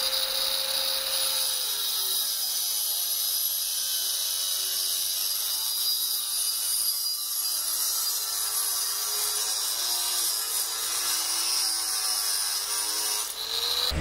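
Angle grinder with a thin multi-purpose cut-off wheel cutting through aluminium square pipe: a steady, high-pitched grinding hiss.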